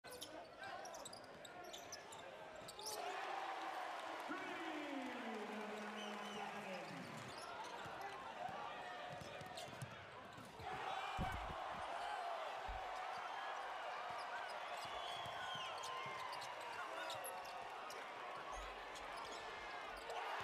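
Live basketball game sound in an arena: steady crowd noise with indistinct voices, short squeaks and a basketball bouncing on the hardwood court a few times. The sound changes abruptly twice, about 3 seconds in and about 10 seconds in, at edits between plays.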